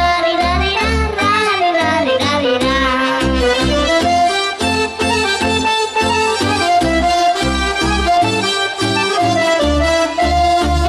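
Romanian folk song with accordion accompaniment over a steady bass beat of about two pulses a second. A young girl's voice sings the melody over the first few seconds, then the accordion carries the tune with held notes.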